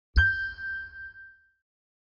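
Sony's sound logo: one chime struck once over a deep thud, its bright tone ringing out and fading within about a second and a half.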